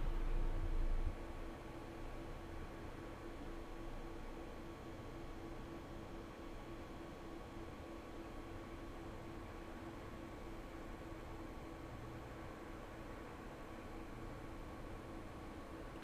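Quiet room tone: a steady low electrical hum with faint hiss, and a low rumble that stops about a second in.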